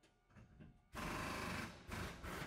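A BMW car sound effect: a loud, rapid mechanical rattling that starts suddenly about a second in after a few faint clicks, with a brief dip near the end.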